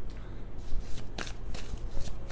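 Tarot deck being shuffled by hand: a run of quick, sharp card flicks, coming more often in the second half.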